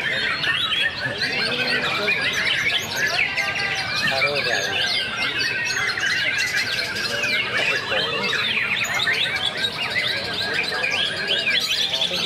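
White-rumped shamas (murai batu) singing at once, a dense, unbroken tangle of fast whistles, trills and chatter from several caged birds overlapping.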